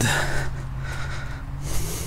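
A man's voice held as a long, level hesitation hum while he thinks, with breathing close to the microphone.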